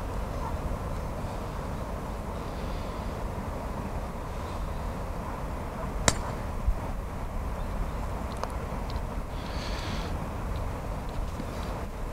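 Steady low wind rumble on the microphone, broken about halfway through by a single sharp click: a putter striking a golf ball on the green.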